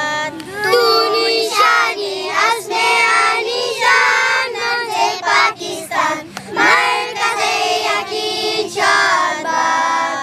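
A group of children singing a song together.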